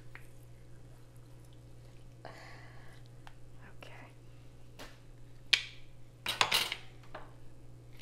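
Kitchen utensil handling: a handheld lever citrus squeezer pressing a lime half, then a sharp click about five and a half seconds in and a brief loud clatter about a second later as utensils are set down and picked up.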